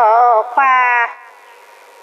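A woman singing an Iu Mien song: a wavering phrase, then a held note that slides slightly upward and breaks off about a second in, followed by a pause before the next line.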